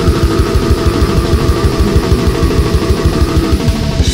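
Brutal death metal from a demo recording: heavily distorted guitars held over fast, steady kick-drum strokes.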